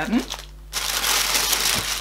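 Plastic packaging crinkling and rustling as it is handled and pulled out of a box. It begins about three-quarters of a second in, after a brief quiet moment, and runs on as a continuous rustle.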